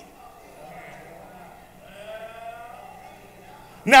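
A faint, drawn-out vocal sound from a person, a single wavering hum-like voice lasting a little over a second, about two seconds in, during a pause in a sermon.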